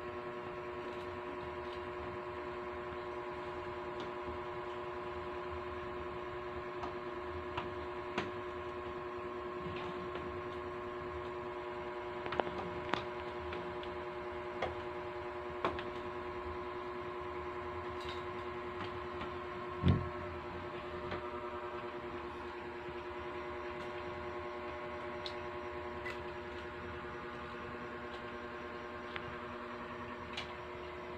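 Fluorescent tube light fixture giving a steady electrical hum made of several held tones, with scattered light clicks and one louder thump about two-thirds of the way through.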